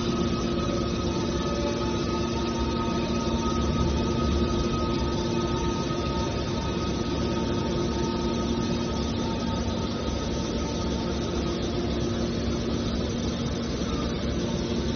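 Hydraulic power unit of a large scrap metal baler running steadily: a low mechanical hum with a few held whining tones over it, and no crushing impacts.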